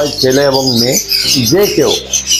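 Many caged pet birds chirping and squawking, with high calls scattered throughout and one call sweeping quickly in pitch near the end.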